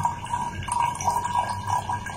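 Liquid poured in a thin stream from a squeeze bottle into a tall graduated cylinder, trickling steadily with a faint ringing tone.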